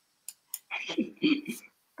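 A woman's voice speaking a few quiet words, just after two faint clicks in a short near-silent gap.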